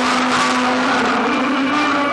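A man's amplified voice through a microphone and loudspeakers, holding one long sung note of devotional recitation that wavers near the end.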